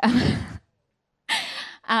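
A woman laughing breathily into a handheld microphone: a short laugh in the first half-second, a moment of silence, then a brief laughing breath near the end.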